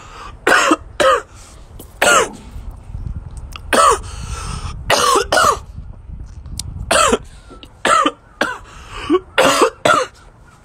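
A man coughing in a fit of about a dozen sharp coughs, spaced about a second apart with some coming in quick pairs.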